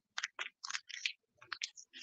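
Paper crinkling and rustling in the hands as it is wrapped around a rolled paper tube, in a string of short crackles.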